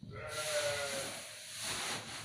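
Rustling of freshly cut grass and a woven sack as the grass is gathered by hand and pushed into the sack. A short, wavering high-pitched call sounds near the start.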